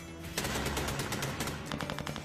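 Rapid automatic gunfire, a dense run of shots starting about half a second in, over a low music bed.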